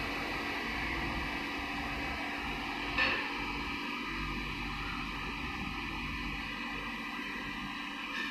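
Steady background hum and hiss, with one brief click about three seconds in.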